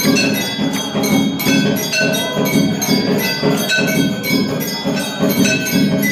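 Temple bells rung continuously for an aarti: a dense, fast run of metallic clangs, several strikes a second, their ringing overlapping.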